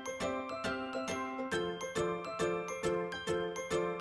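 Music: a bright melody of quick, evenly spaced struck notes that ring on, over a steady beat.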